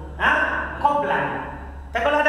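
A man's voice speaking in short phrases, with a steady low hum underneath.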